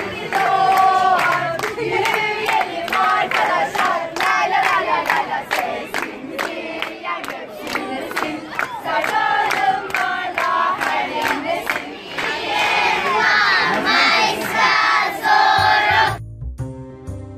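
A group of children and young people singing together while clapping in a steady rhythm, about two or three claps a second. The voices grow higher and stronger near the end.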